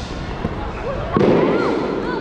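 A sudden heavy thud on the carpeted competition floor during a wushu staff routine, about a second in, trailing off briefly in the echo of the large hall, over the hall's background chatter.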